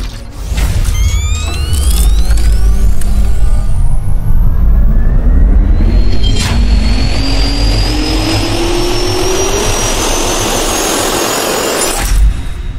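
Produced jet-turbine spool-up sound effect: whines rising steadily in pitch over several seconds above a deep rumble, with a sharp hit about six and a half seconds in.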